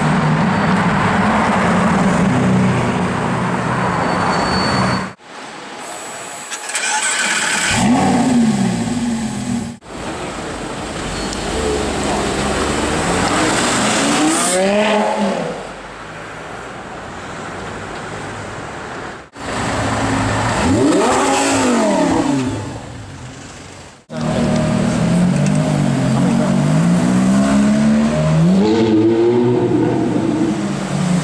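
Supercar engines revving and accelerating past on city streets, in a run of short clips cut abruptly together, each engine's pitch climbing and falling with the revs. The last clip is a Ferrari 458 Italia's V8 revving as it pulls away.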